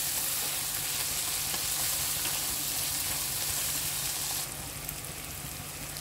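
Chopped onion, tomato and green chilli sizzling in hot oil in a nonstick pan while a spatula stirs them. The steady frying hiss gets quieter about four and a half seconds in.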